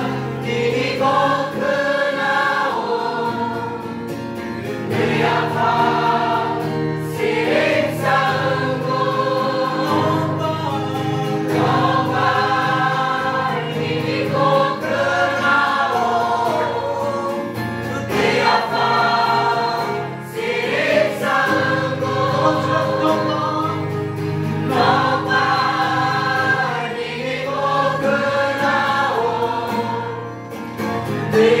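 Worship song sung by voices in phrases of a few seconds each, over sustained low instrumental notes.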